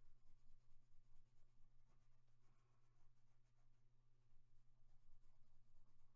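Faint scratching of a colored pencil shading across a paper coloring page, over a steady low hum.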